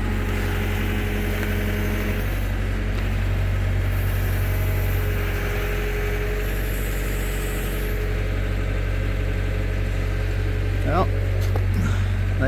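Komatsu WB-150AWS backhoe's diesel engine running steadily while its hydraulics work the bucket and thumb to lift and swing a log. The engine's tones shift a little midway.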